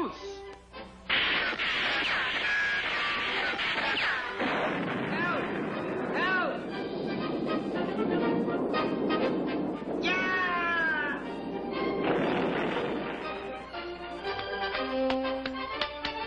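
Dramatic cartoon soundtrack: music mixed with noisy action sound effects, with wordless cries rising and falling about ten seconds in.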